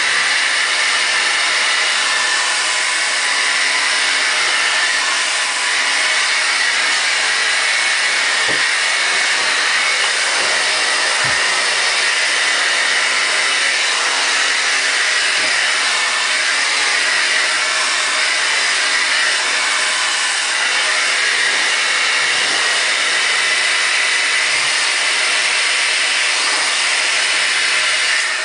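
Handheld blow dryer running steadily, a loud, even rush of air blowing onto hair as it is brushed straight.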